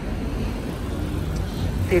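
A motor vehicle's engine running steadily, a low even rumble.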